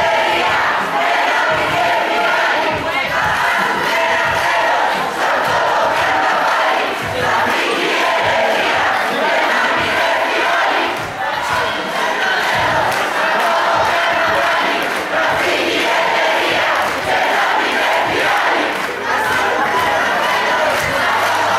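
Large crowd of protest marchers shouting slogans, a continuous, loud mass of voices.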